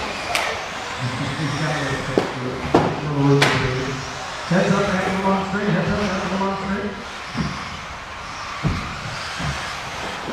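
Electric 4wd RC buggies racing on an indoor carpet track: a thin motor whine and tyre hiss, with a few sharp knocks in the first few seconds as cars strike the track or land, under a voice over the PA.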